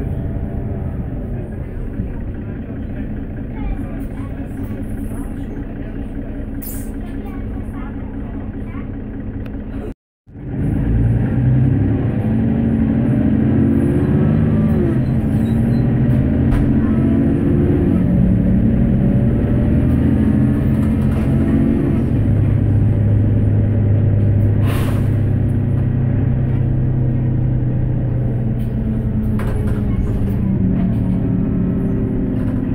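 Inside a Mercedes-Benz Citaro bus under way: its OM457LA diesel engine runs loudly, rising in pitch several times as the bus accelerates, then holds a steady low drone. The sound cuts out completely for a moment about a third of the way in.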